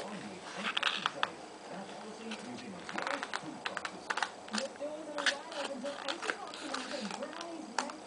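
A baby's soft, wavering babbling and humming while he handles and chews a paper postcard. The card's paper crackles in many sharp little clicks.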